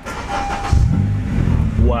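Honda Civic Si's 2.4-litre four-cylinder engine starting up: a short build-up, then it catches about three-quarters of a second in and runs loudly, on a freshly flashed KTuner base tune.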